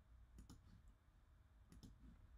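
Near silence with two faint pairs of sharp clicks, one about half a second in and one near the end: a computer mouse button being pressed and released.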